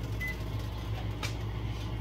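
A short electronic beep from a microwave oven's keypad as it is set, over a steady low hum, with a faint click about a second later.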